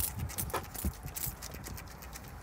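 A folding hand fan being flapped rapidly, giving a quick irregular clicking and fluttering that is densest in the first second and a half, then thins out.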